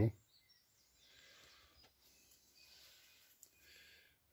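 Faint handling noise of a plastic miniature and a small metal hobby tool: quiet rustling and scraping with a couple of light clicks, over a low hiss.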